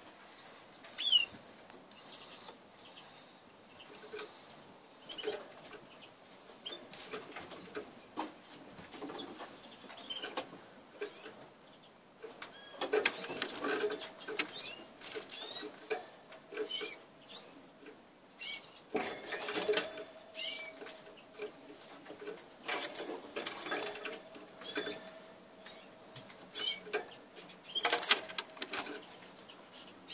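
Agate opal canary hen giving short, upward-sweeping chirp calls at irregular intervals, with bursts of rustling and wing flutter as she moves about the cage, the loudest about halfway through and again near the end.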